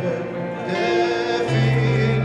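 Men singing with instrumental music, in long held notes over a steady low tone.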